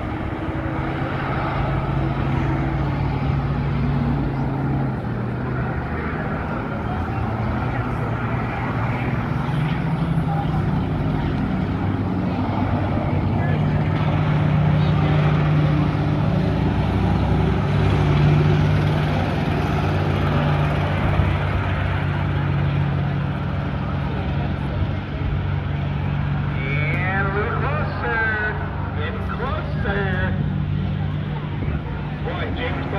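School bus engines running around a figure-eight track, a steady low drone that rises and falls in pitch as the buses speed up and slow down. Near the end a wavering, higher sound rises and falls over a few seconds.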